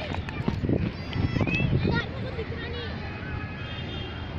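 Children's voices calling out briefly across an outdoor cricket field, over an uneven low rumble on the microphone that is strongest in the first two seconds.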